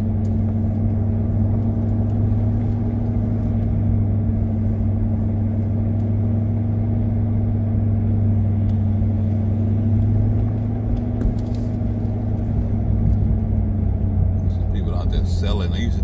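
2017 Corvette Grand Sport's 6.2-litre V8 running at a steady cruise, a constant low drone heard from inside the open-top cabin.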